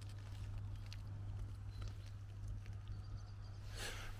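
Faint scattered crunching of footsteps on gravel over a low steady hum.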